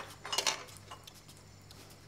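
Kitchen utensils clinking against pots and dishes, with a short cluster of clinks about half a second in.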